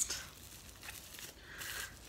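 Faint rustling of packaging being handled, in two soft stretches, the second and louder one near the end.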